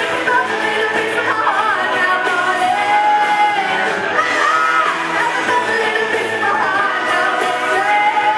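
Live rock band playing, with female singers belting the vocal line over electric guitar, keyboard and drums.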